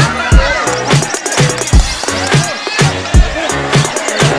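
Loud dance music with a heavy, steady drum beat, one or two beats a second, and a voice over it.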